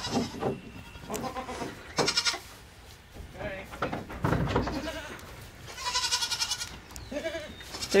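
Goats bleating: several separate short calls, one high and quavering about six seconds in.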